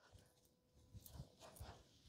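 Near silence: room tone with a faint steady hum and a few faint, soft low thumps in the second half, from stockinged feet and hands landing on a thick rug during a floor exercise.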